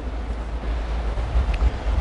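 Background noise of a busy exhibition hall: a steady low rumble under a faint hiss.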